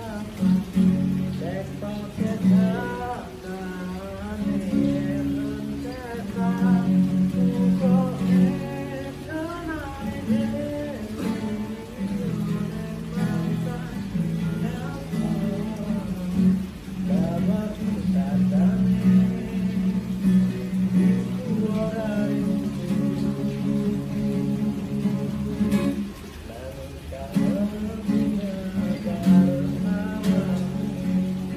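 Acoustic guitar strumming chords, with a man singing a melody over it.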